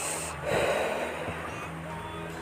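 A person's breath close to the microphone: one short noisy exhale about half a second in, lasting well under a second.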